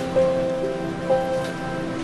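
Soft background music score of sustained, held notes that shift to new pitches about a second in, over a steady hiss.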